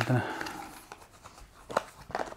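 Stiff white paperboard folder being unfolded by hand: a soft paper rustle, then a single sharp snap a little under two seconds in.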